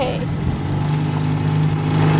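Outboard motor running at a steady pitch, growing a little louder just after the start.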